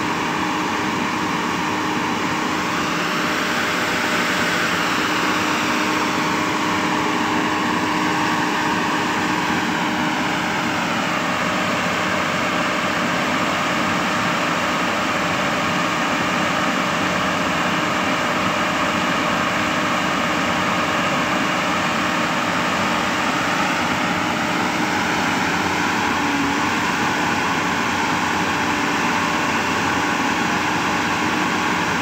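Heavy diesel engines of a long-reach excavator and a mobile crane running steadily while lifting a steel plant frame; the engine note swells and falls a couple of times as the machines take load.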